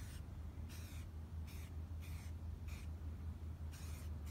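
An aerosol spray-paint can hissing in several short bursts as paint is dusted onto a plastic goose decoy, over a steady low hum.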